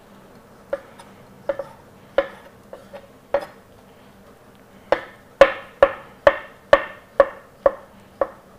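Chef's knife slicing a shiitake mushroom into thin julienne strips on a plastic cutting board, each cut ending in a sharp knock of the blade on the board. The cuts come a few at a time at first, then from about five seconds in as a steady, louder run of about two a second.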